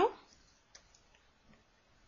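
A few faint, short clicks, typical of a stylus tapping a pen tablet while numbers are handwritten, after the end of a spoken word at the very start.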